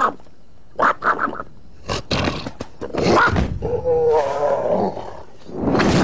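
Cartoon lion roaring and growling in several short bursts. A wavering pitched cry comes in the middle.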